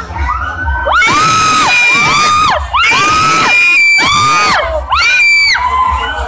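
Loud dance music with a repeated high-pitched sliding sound about once a second, each rising and then falling, over a crowd of students shouting and cheering.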